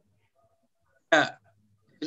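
A person's voice: one short, sudden vocal sound lasting about a third of a second, about a second in, with near silence before it.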